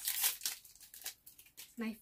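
Small foil packet crinkling and tearing as it is pulled open by hand, a dense crackle loudest in the first half second that then thins out.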